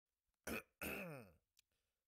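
A man clearing his throat: a short burst about half a second in, then a longer voiced sound that falls in pitch.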